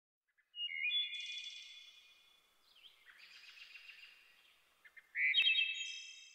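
Songbird singing in three short warbling phrases, each starting strongly and trailing off. The last phrase, about five seconds in, is the loudest.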